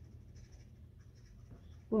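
Faint scratching of a wood-burning pen's hot nib drawn back and forth across the wood in short shading strokes.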